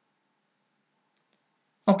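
Near silence with two faint, quick clicks about a second in, then a man's voice begins just before the end.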